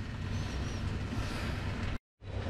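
Steady low background hum and room noise with no distinct event in it, cutting off abruptly at the very end.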